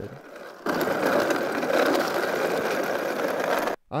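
Electric scooter's rear hub motor rolling on concrete with no tire, giving a loud, rough, rapid rattling noise. It starts about half a second in and cuts off suddenly near the end.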